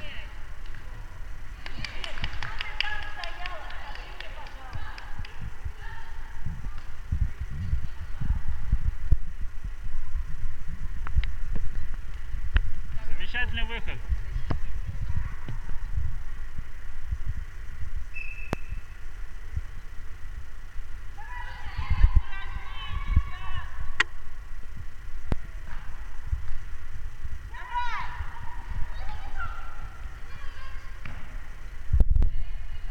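Indoor futsal match in a gym: bursts of shouting from players and spectators, a few sharp knocks of the ball being kicked, and thudding of running feet on the wooden floor.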